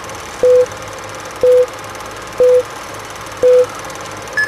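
Film-leader countdown sound effect: a short beep about once a second, four in all, each starting with a click, over a steady hiss.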